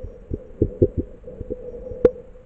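Muffled underwater thumps, about seven in quick irregular succession, over a steady hum, picked up by a submerged camera in its housing while snorkeling.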